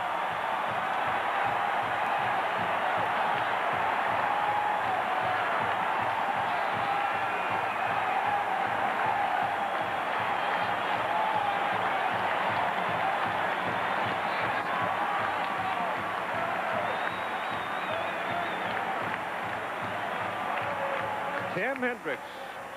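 Large stadium crowd cheering and yelling in a sustained roar after a home-team touchdown, with a steady low beat of about four a second underneath.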